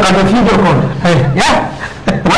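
Speech: a man talking animatedly in Somali, his voice rising and falling in pitch.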